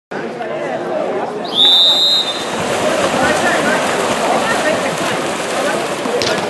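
A referee's whistle blows one long blast about a second and a half in, starting the water polo swim-off, over steady chatter and shouts from spectators.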